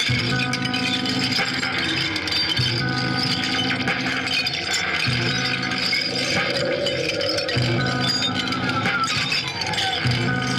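Live experimental electronic improvisation: a low droning loop that comes round about every two and a half seconds, under a busy scatter of small clicks and rattles. Near the end a tone glides down in pitch.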